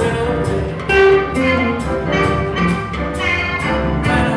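Live blues band playing: drums keeping a steady cymbal beat under guitars, keyboards and saxophone.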